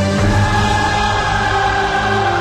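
Choral music with a sung choir holding sustained chords, changing chord just after the start.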